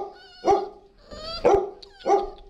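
Puppy barking: two short, high-pitched barks about a second apart.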